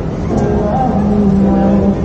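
Busy city street ambience: a steady rumble of traffic with the voices of a crowd mixed in, and a few held low tones over it.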